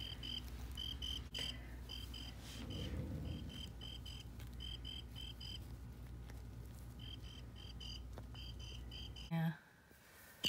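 Electronic cricket chirp from a Pounce & Play cricket cat toy: short, high chirps in quick groups of two to four, repeating steadily. The chirping cuts off near the end.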